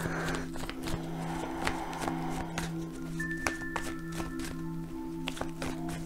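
Soft background music of steady held low notes, with higher held notes joining about three seconds in. Light clicks and taps run through it, the sound of tarot cards being handled on the table.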